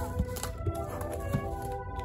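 Background music with the handling noise of corrugated cardboard mailers being shuffled in a shipping box: rustling and a few sharp taps and knocks.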